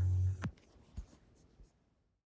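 Final acoustic guitar chord ringing, stopped short with a click about half a second in. A few faint clicks follow.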